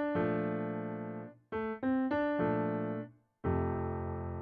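Piano playing a phrase of a few quick single notes that lands on a held B-flat major 7 chord, played twice; a new chord is struck about three and a half seconds in.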